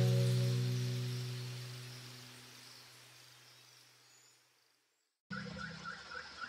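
A strummed guitar chord in the background music rings out and fades away over about three and a half seconds, leaving near silence. Near the end a faint low hum begins.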